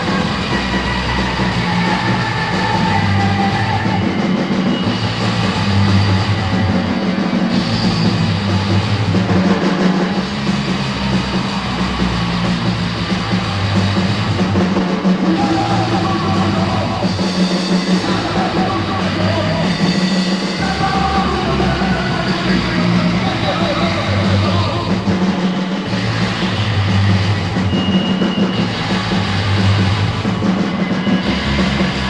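Early-1980s hardcore punk band playing loud and fast without a break, a raw rehearsal-room recording taken from cassette.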